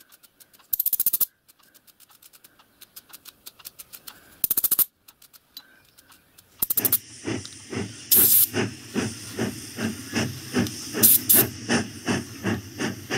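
A small brush scrubbing in quick strokes inside the bore of a brass whistle push valve, with two short hissing bursts. From about seven seconds in there is a steadier hiss with a regular rhythm of rubbing strokes.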